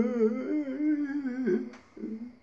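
A voice humming one long note that wavers up and down in pitch, ending just before the end.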